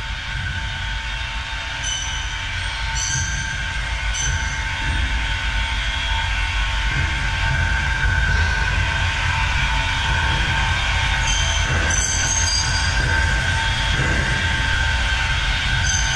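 Underwater ambient noise picked up by a camera in a rock cave: a steady low rumble with faint constant whining tones and a few brief high chirps, a cluster about two to four seconds in and another near twelve seconds.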